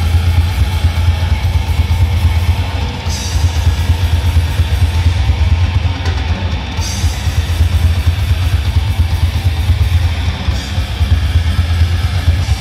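A heavy metal band playing loud and dense: distorted electric guitars, bass and a drum kit with a heavy low end.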